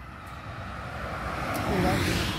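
A passing vehicle, its noise swelling steadily to a peak near the end.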